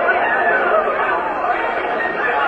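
Speech: several voices talking over one another in steady chatter.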